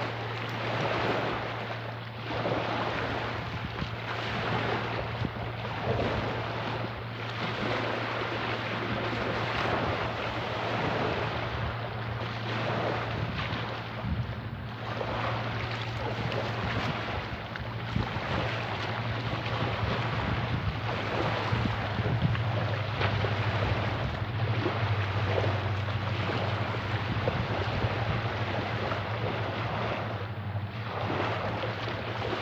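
Small waves breaking and washing up over a seaweed-covered shoreline, surging every second or two, with wind buffeting the microphone and a steady low hum underneath.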